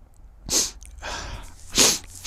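A man sneezing twice, the second sneeze louder, about a second and a quarter after the first.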